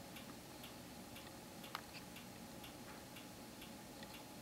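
Faint, regular ticking in a quiet room, about two ticks a second, with one slightly louder click just before the middle.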